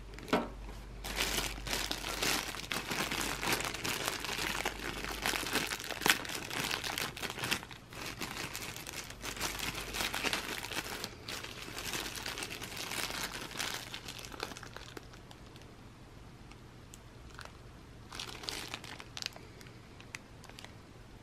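Clear plastic bag crinkling and rustling as it is handled and opened, a dense run of crackles that dies down about three-quarters of the way through, with a few more crinkles near the end.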